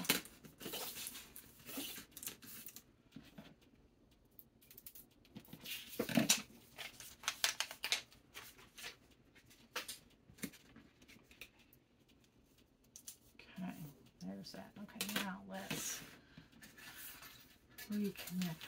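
Small handling noises of craft materials on a cutting mat: rustles, light taps and clicks as a sign and its wire hanger are worked by hand, with one louder knock about six seconds in.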